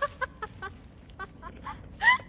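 A woman laughing: a run of short, high-pitched laughs with brief gaps between them, about eight in two seconds.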